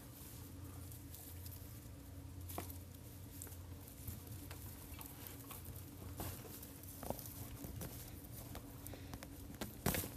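Soft, scattered scraping, crumbling and ticking of dry potting soil and the rustle of dry garlic leaves as a small hand shovel digs around a plant in a planter box, over a steady low hum. A few sharper clicks stand out, the last just before the end.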